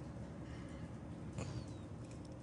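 Faint room hiss with one soft click about one and a half seconds in, from a computer mouse being clicked.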